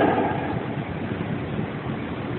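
Steady hiss and low rumble of background room noise in a band-limited recording of a hall talk, easing down over the first half second.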